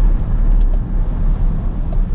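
Steady low rumble of engine and road noise inside the cab of a slowly moving truck.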